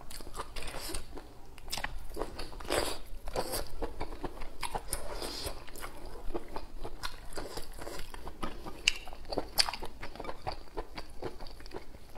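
Close-miked mouth sounds of a person biting into and chewing food, a continuous run of short clicks and smacks.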